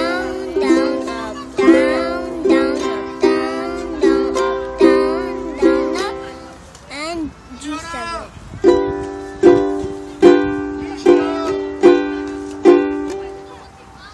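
Ukulele chords strummed in a steady rhythm, one strum about every 0.8 seconds, demonstrating a down-up strumming pattern; the strumming stops for about two seconds midway, then resumes.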